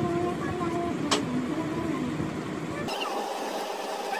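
Background rumble with faint, indistinct voices, and a single sharp click about a second in; the deepest part of the rumble drops away near the end.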